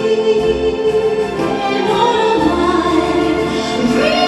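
Live orchestra, strings to the fore, playing a slow, sustained passage of a ballad, with the chord shifting about halfway through.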